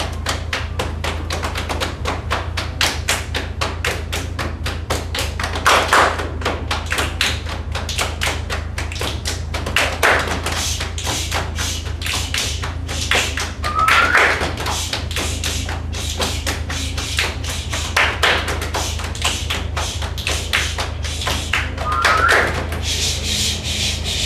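A children's body-percussion ensemble plays a fast, steady rhythm of hand claps and slaps on the body, with louder accented hits about every four seconds. Twice, a short rising vocal call rings out with an accent.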